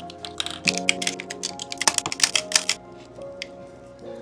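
Quick run of clicks and taps from a 35mm film camera and film cassette being handled while a roll is loaded, thinning out near the end, over background music with sustained tones.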